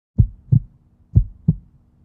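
A heartbeat-like sound effect: low thumps in pairs, two pairs about a second apart.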